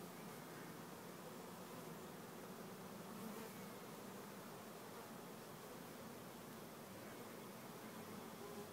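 A swarm of honey bees buzzing in a faint, steady hum.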